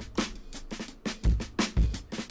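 A drum loop of kick, snare and hats playing through a dynamic saturation plugin. The hard hits come out crunchy, with distortion on the kick and a snap on the snare, because the saturation is set to act only on the loudest peaks.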